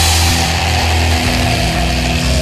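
Black/death metal recording: heavily distorted guitars and bass hold a sustained chord, with a high note that slides up just before and is held over it, while the drum hits stop.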